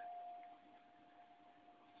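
Near silence: room tone with a faint steady tone that fades out about halfway through.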